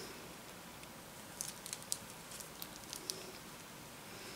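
Faint light clicks and scratches from hands and needle working stiff cross-stitch canvas, a scattered handful between about a second and a half and three seconds in, over a quiet steady room background.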